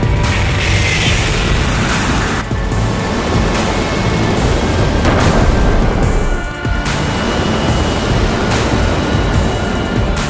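Music over a steady, deep rocket-engine rumble.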